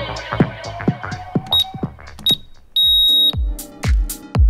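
Electronic dance music with a steady kick-drum beat. Over it, a workout interval timer gives two short high beeps and then one longer beep, marking the end of a work interval. The music thins out under the beeps and comes back with a heavy kick drum near the end.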